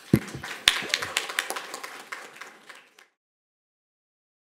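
Audience applause, dying away and cut off abruptly about three seconds in.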